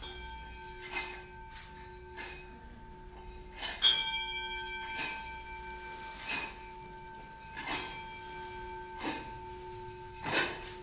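Altar bells rung at the elevation of the host during the consecration of a Mass, struck about once every second and a quarter, each ring leaving a sustained tone. The loudest strike comes about four seconds in.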